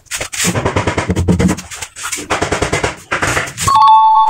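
Background music with a fast drum beat. Near the end a steady electronic tone comes in and is the loudest sound: a 'correct' sound effect.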